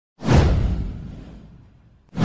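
A single whoosh sound effect with a deep low rumble. It swells in suddenly and fades away over about a second and a half.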